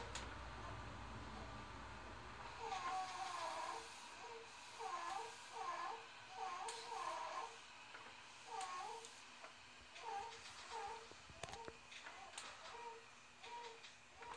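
Commuter train's running rumble inside the car fading away a couple of seconds in as the train comes to a stop. After that, faint short high vocal sounds that bend up and down come roughly once a second.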